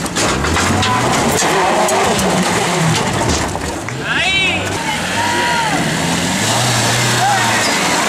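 Off-road 4x4 engines revving up and down as the vehicles crawl over rocky, dirt trial obstacles, with spectators talking and shouting throughout and a loud shout about four seconds in.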